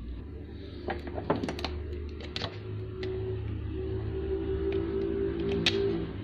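Light clicks and knocks of a plastic sewing-machine motor housing and metal parts being handled and fitted into the machine, with sharp ones about a second in and near the end. Under them run a low hum and background music with long held notes that swell in the second half.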